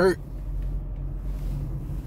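A steady low rumble, with the tail of a man's spoken word at the very start.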